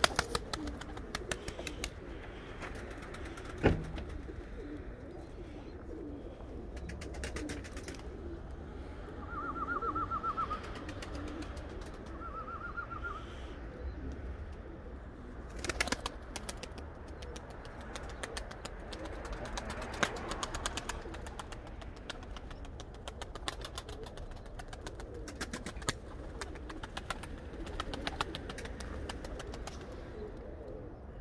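Domestic pigeons cooing around the loft, with scattered small clicks and a single sharp clap about four seconds in. A short warbling bird call comes twice, about ten and thirteen seconds in.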